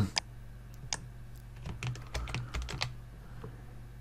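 Scattered clicks of a computer keyboard and mouse: a couple of single clicks, then a quick run of light clicks about two seconds in, with a soft low thud among them.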